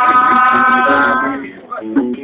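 A voice holding one long sung note over acoustic guitar notes, the held note ending about a second and a half in while the guitar carries on.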